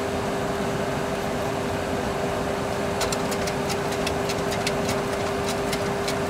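Steady hum of a Boeing 737 Classic flight simulator cockpit during the climb, with one constant tone running through it. From about halfway through, a quick run of small clicks as the heading selector knob on the mode control panel is dialled round to a new heading.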